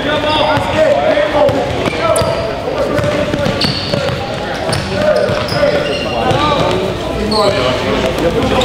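A basketball dribbled on a gym floor in a large, echoing hall, over continuous talk and calls from players and spectators.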